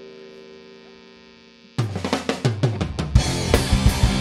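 An electric guitar chord rings out through the amps over their hum and slowly fades. About two seconds in, the four-piece pop punk band (drum kit, two electric guitars, bass) kicks in together with a quick run of drum and guitar hits, then settles into loud full-band playing near the end.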